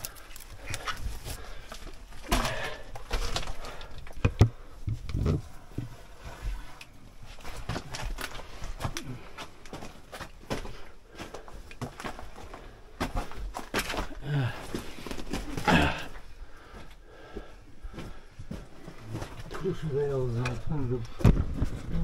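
Loose rock and gravel crunching, clattering and scraping as someone scrambles over rubble, in irregular knocks and shuffles. A voice sounds briefly near the end.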